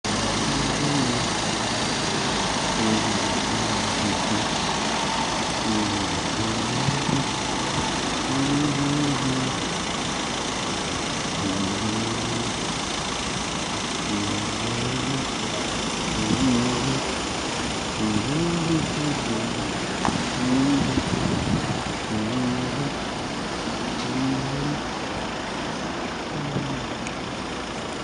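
Road traffic at a busy junction: car engines idling and moving off under a steady noisy wash of street sound.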